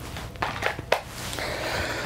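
Three light clicks in the first second, then a soft rustling near the end: handling noise.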